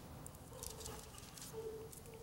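Faint rustle and soft crackles of Bible pages being turned, with a faint short tone near the end.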